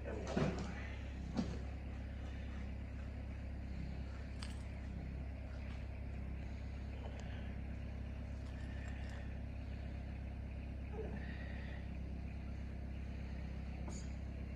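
A steady low hum, with a couple of soft knocks in the first two seconds and a few faint, brief high squeaks later on.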